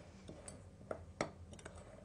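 A metal spoon stirring flour and other dry ingredients in a glass mixing bowl, giving a few faint clicks as it touches the glass.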